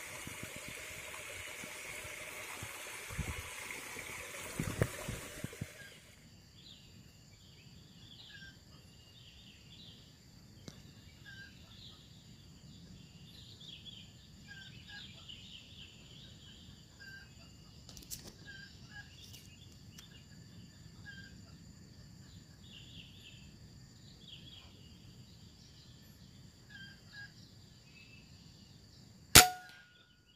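A stream running over rocks with a couple of knocks, then quieter forest with scattered high chirping. Near the end comes a single sharp shot from a scoped air rifle, the loudest sound.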